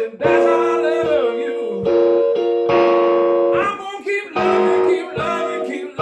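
Amplified electric guitar playing a blues phrase: held notes and chords with bent, gliding pitches, in phrases of a second or two with brief gaps between them.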